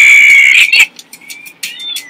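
A loud, high-pitched shriek that cuts off abruptly a little under a second in, followed by faint short chirps and clicks.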